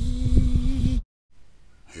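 Wind rumble and buffeting on the microphone under a steady low hum, cut off abruptly about a second in by a brief dead silence.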